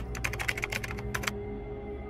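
Rapid keyboard-typing clicks, a sound effect that goes with text appearing on screen. They stop about a second and a half in, leaving a low, steady ambient music drone.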